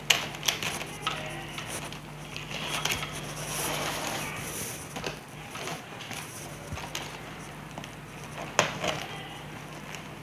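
Stiff plastic strapping tape rustling and crackling as it is pulled and tucked through a woven strapping-tape basket by hand. Sharp clicks come just after the start and again near the end, with a rustling stretch in the middle, over a steady low hum.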